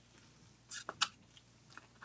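Faint handling of a small die-cut cardstock piece on a craft mat: a brief paper rustle and two sharp clicks a little under a second in, then a fainter tick near the end.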